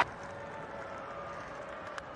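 Faint ballpark crowd ambience with no commentary, ending in a single sharp crack of a bat hitting a pitched ball.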